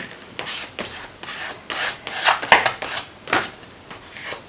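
Fingers rubbing and smearing acrylic paint across a paper journal page, a string of scraping strokes about two a second, with one sharp click a little past halfway.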